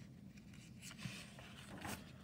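Faint rustle of paper sliding across a desk as a sheet is pulled away and a new one is put down. It starts about halfway through, with a couple of soft ticks near the end.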